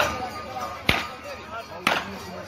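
Three sharp cracks of a long whip about a second apart, each cutting through crowd voices.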